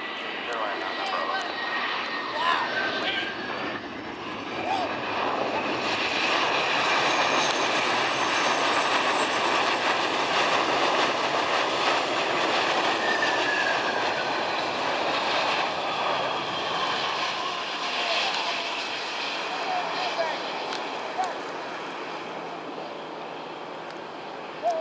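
Boeing 717-200's twin Rolls-Royce BR715 rear-mounted turbofans spooling up in reverse thrust during the landing rollout. The engine noise builds, holds loud through the middle and fades, with a whine that falls in pitch as the jet passes.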